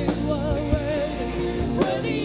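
Live worship music: a singer holding a note with vibrato over a band with violin, with a few drum hits.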